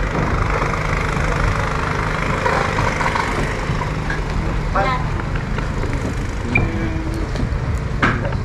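A steady low engine-like rumble runs throughout, with brief snatches of people's voices in the background.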